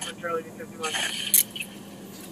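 A woman's faint wavering, whimpering voice, then a brief scraping rustle of a struggle with a sharp click about a second in.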